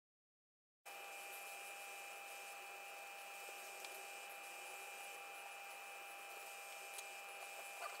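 Faint steady hum with two constant high tones, starting after about a second of dead silence, with a few faint ticks.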